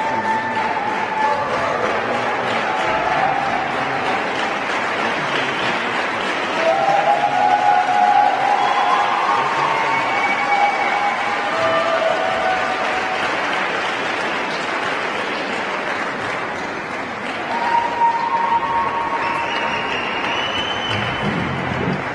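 An audience in an ice rink applauding steadily, with music playing over the clapping.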